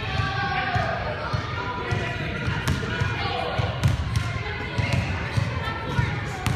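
A basketball bouncing and feet running on a gym's hardwood floor during a children's game, irregular thumps and knocks, with children's voices calling across the hall.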